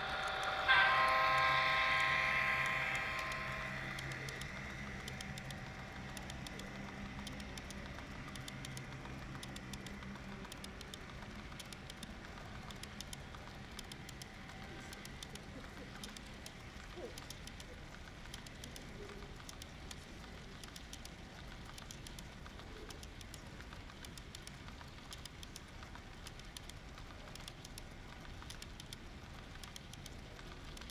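Model diesel locomotive's onboard sound sounding a multi-tone horn blast about a second in, lasting a couple of seconds and the loudest thing here, over a low diesel engine hum that fades out by about ten seconds. After that the train runs on with a steady, rapid clicking of the coal hoppers' wheels over the track.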